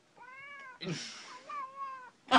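A domestic cat meowing twice: one call in the first half second or so, a second near the end, each rising then falling in pitch, with a short breathy noise between them.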